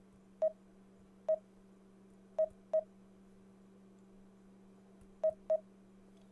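Key-press beeps from a Garmin nüvi GPS's touchscreen keyboard as a word is typed letter by letter: six short, identical tones at uneven spacing, two of them in quick pairs. A faint steady low hum runs underneath.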